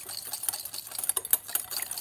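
Maldon sea salt flakes crumbled between fingertips and falling into a glass mixing bowl: a dense, rapid patter of fine ticks.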